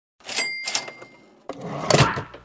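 Intro sound effects: a sharp, bell-like ding that rings on briefly about half a second in, a second clatter just after it, then a voice saying "Cut" near the end.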